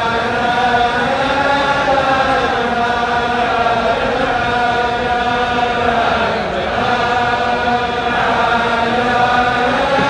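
Large crowd of men singing together in unison, a slow melody of long held notes that bend gently in pitch.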